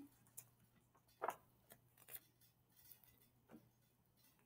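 Near silence with a few faint, irregular clicks and soft rustles as a picture-book page is handled and turned, the clearest about a second in.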